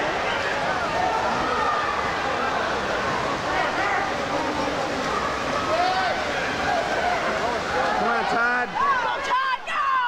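Spectators cheering and shouting for swimmers in a freestyle race, many voices at once. From about eight seconds in, a few single voices yell louder and higher above the crowd.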